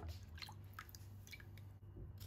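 Faint drips and small splashes of water as hands move ginger roots around in a pot of water, a few soft ticks scattered through.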